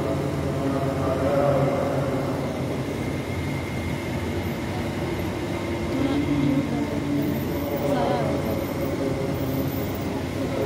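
A man's voice chanting in long drawn-out melodic phrases, echoing through a vast hall over a steady crowd murmur.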